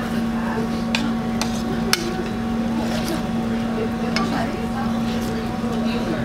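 Chopsticks clicking against a noodle bowl, a few sharp clicks about one and two seconds in, over a steady low hum and faint background chatter.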